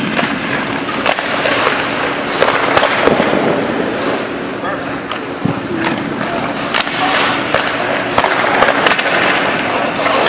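Ice-hockey skate blades scraping and pushing on the ice, with repeated sharp clacks of pucks struck by a stick and hitting the goalie's pads.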